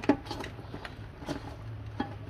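Pieces of seasoned beef foot being mixed by hand in a stainless steel bowl, giving a few faint knocks and wet shuffling sounds against the metal.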